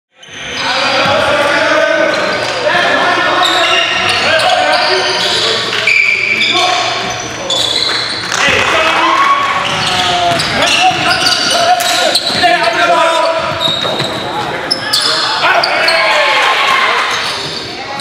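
Live basketball game sound in a gymnasium: the ball bouncing on the hardwood floor while players and spectators shout and call out, all echoing around the hall.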